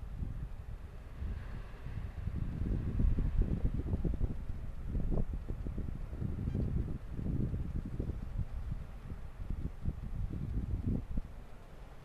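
Wind gusting against the camera microphone, an uneven low rumble that builds about a second in and dies down near the end.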